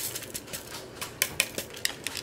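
A small zip bag of square glow-in-the-dark diamond painting drills being handled, the resin drills clicking against each other and the plastic in a run of sharp, irregular clicks, a few louder ones past the middle.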